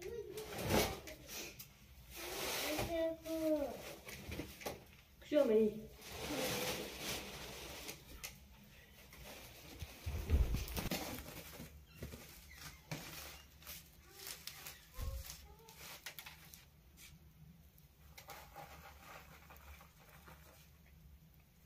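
Hands spreading flour over a woven sack cloth: rustling and brushing of the cloth and powder, with a few dull knocks. Short voice sounds break in twice early on.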